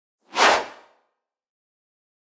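A single whoosh sound effect, a short rush of noise that swells quickly and fades out within about half a second, starting just after the beginning. It marks a slide transition in an animated end screen.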